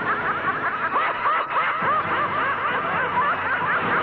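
A woman's high-pitched cackling laugh, a fast unbroken run of repeated 'ha' bursts lasting throughout.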